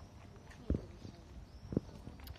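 Two dull, low thumps about a second apart, close to a hand-held phone's microphone.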